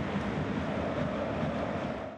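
A steady, even rushing noise, deeper than it is bright, holding one level without a break.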